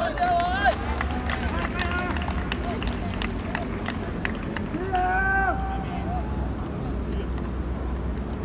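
Men's voices calling out on an outdoor pitch, with scattered hand claps in the first few seconds and a longer held shout about five seconds in.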